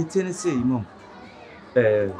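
Only speech: a short spoken phrase, a pause of about a second, then speech starts again near the end.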